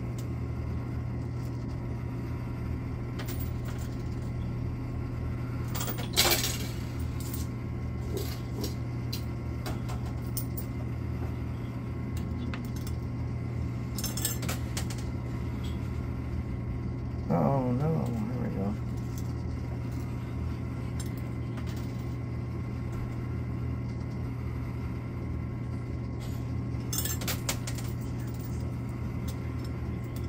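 Quarters clinking in a coin pusher arcade machine as coins are fed in and slide across the metal shelf, with a few sharper clinks, about 6, 14 and 27 seconds in. A steady low hum runs underneath.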